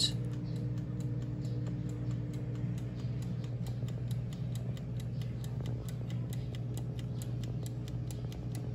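Hanabishi air fryer running while cooking: a steady hum like a fridge, with a light regular ticking of about four clicks a second over it.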